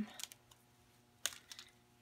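A few faint clicks and taps from hands working a soft measuring tape around a leather headstall with metal conchos, the sharpest about a second and a quarter in.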